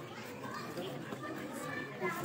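Faint, indistinct chatter of many voices from a waiting audience, children's voices among them.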